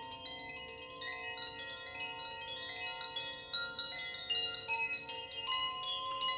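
Chimes ringing: many bright metal tones overlap and keep sounding, and new strikes come in every fraction of a second.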